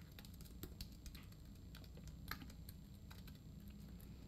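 Faint, irregular keystrokes of typing on a computer keyboard.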